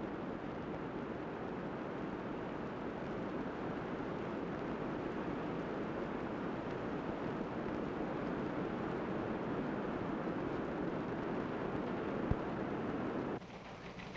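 A steady, even rushing noise with no pitch, which cuts off suddenly about a second before the end. There is one faint click about twelve seconds in.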